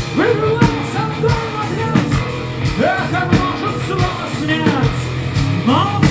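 Heavy metal band playing live through a PA: distorted electric guitars, bass and drums, with the singer's voice over them.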